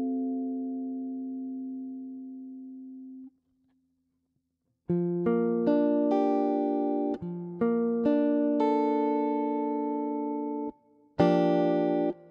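Clean electric guitar playing jazz comping chords. A D7♭9♯9 chord rings and fades for about three seconds, then falls silent. After a pause of about a second and a half, short rhythmic Gm7/9 chord stabs follow.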